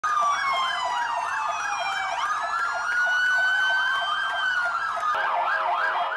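Several ambulance sirens sounding at once: a rapid warble overlapping slower rising and falling wails, with a steady lower tone joining about five seconds in. The sirens are sounded together as a farewell salute to a colleague, not on an emergency run.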